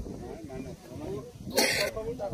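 People talking in the background, not close to the microphone. About one and a half seconds in comes a short, harsh burst of noise like a cough.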